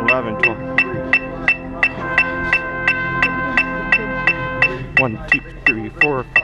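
An electronic metronome on a loudspeaker clicks a steady beat, just under three clicks a second. Under it a held, pitched drone tone plays, with a second, higher tone added for a couple of seconds in the middle. A voice calls out near the end.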